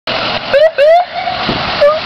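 Emergency vehicle siren sounding in short rising whoops over the steady noise of a fire department pickup truck passing on a wet road.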